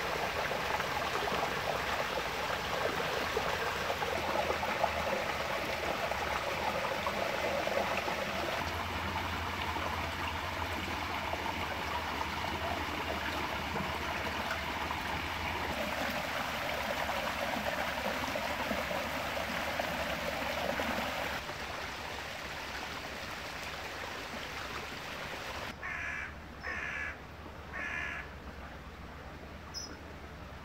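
Brook water running and splashing over a small concrete weir and stones, quieter in the last third. Near the end a crow caws three times.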